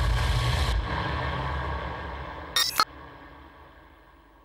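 Logo-reveal sound effect of a channel intro: a deep low rumble that slowly fades away, broken by one short sharp hit about two and a half seconds in.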